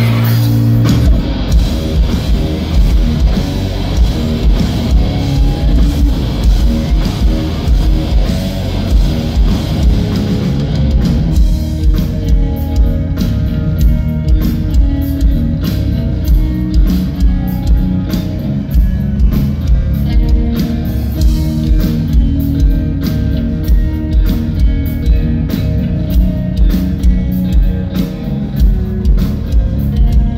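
Rock band playing live through a concert PA: heavy electric guitar and a drum kit keeping a steady, driving beat. The treble thins out about eleven seconds in, and the guitar and drums carry on.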